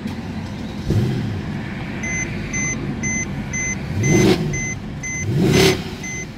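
Mercedes-Benz C63 AMG 507 Edition's 6.2-litre V8 starting about a second in, then idling and blipped twice, with the revs rising sharply near four and again near five and a half seconds. A dashboard warning chime beeps about twice a second from two seconds in.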